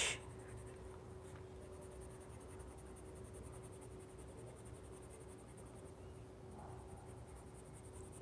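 Faint scratching of a pink coloured pencil shading on coloring-book paper, over a faint steady hum.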